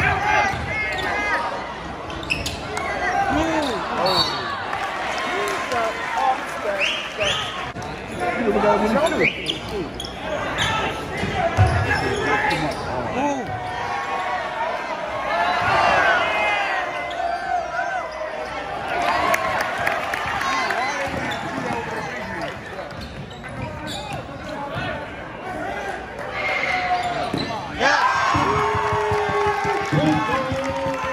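A basketball being dribbled on a hardwood gym court during a game, with many voices from spectators and players talking and calling out over it.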